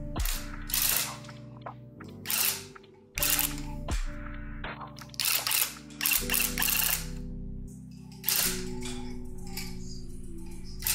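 Electric cut-pile tufting gun punching yarn into the rug backing in short bursts of rapid mechanical chattering, each about half a second long, repeated several times with brief pauses between them.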